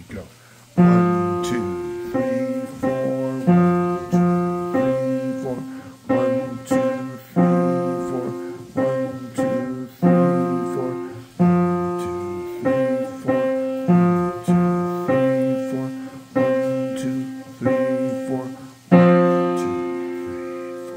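Piano played in F: chords struck at a slow, even pace, about one every second and a quarter, each ringing and fading before the next. A louder chord comes near the end.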